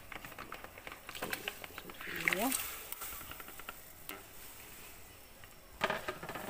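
Raw chicken feet being tipped from a plastic basin into a pot of hot water: a quick run of small clicks and splashes in the first two seconds, with a few more later on.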